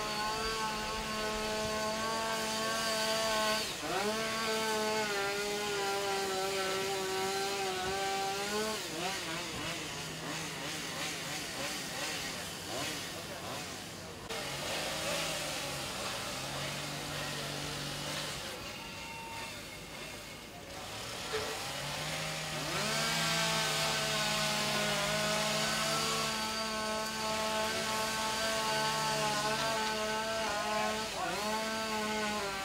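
Gas-powered saw, a chainsaw type, revving up to high speed and holding there for several seconds at a time. It runs high at the start, rises again about 4 s in, drops to a rough lower running for the middle stretch, then revs high again for the last third. This is typical of firefighters cutting open a roof for ventilation.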